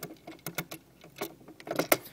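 The top cover of a Singer 4411 sewing machine being handled and fitted back onto the machine. It makes a run of irregular light clicks and knocks, which come faster near the end.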